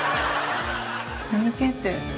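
A burst of laughter over steady background music, followed by a short spoken line in Japanese near the end.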